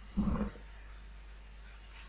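A single short voice-like sound, about a third of a second long, just after the start, over faint steady hiss.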